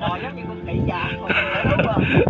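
Indistinct talking voices over background music.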